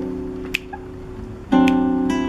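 Acoustic guitar chord ringing and slowly fading, with a short click about half a second in, then a new chord strummed sharply about one and a half seconds in.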